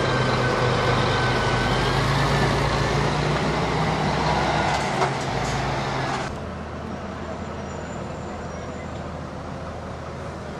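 A heavy truck's diesel engine running close by with road noise, a short knock about five seconds in, then a sudden drop about six seconds in to quieter background traffic noise.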